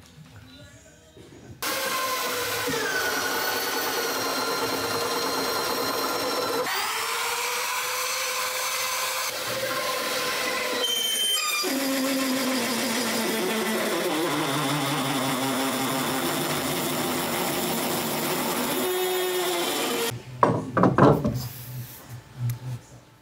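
Electric drill boring a long auger bit through thick purpleheart timber for a rudder bolt, the motor whine starting about a second and a half in and shifting in pitch as the load changes. It breaks off near the end, followed by a few short knocks.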